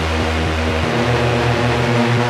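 Techno music in a DJ mix: a sustained, droning synth bass and layered synth tones, with the bass stepping up in pitch a little under a second in.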